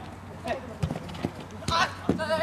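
Futsal ball being kicked and players running on artificial turf: a few sharp thumps spread over two seconds, with players calling out between them.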